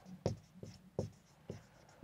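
Whiteboard marker rubbing and squeaking on a whiteboard in about four short strokes as a word is written.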